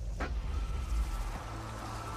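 Film sound effect of a deep rumble that starts suddenly with a sharp knock, with a steady high held tone joining about half a second in.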